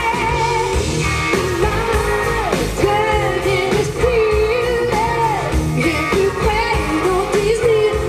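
A woman singing lead over a live pop-rock band: electric guitars, bass and drums. The sung melody wavers and slides between held notes over a steady drum beat.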